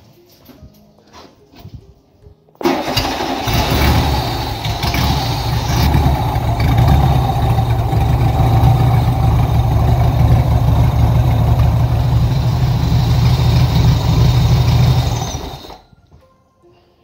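Air-cooled flat-four engine of a VW Fusca (Beetle), newly fitted with a Gol MI ignition coil, starts suddenly about two and a half seconds in and runs steadily until it stops near the end. It starts readily and runs well on the new coil.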